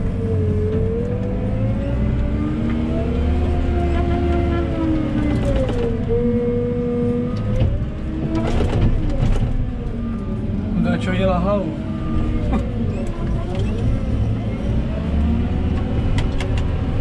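JCB telehandler's diesel engine heard from inside its cab, working under load, its pitch rising and falling again and again as the engine revs up and eases off. A few sharp knocks come about halfway through.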